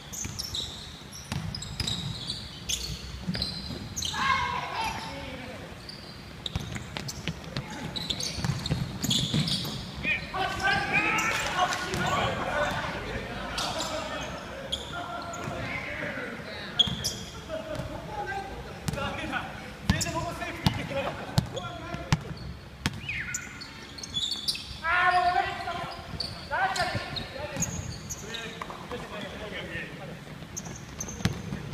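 Basketball bouncing and dribbled on a wooden gym floor during a game, with players calling out to each other in bursts, echoing in a big indoor hall.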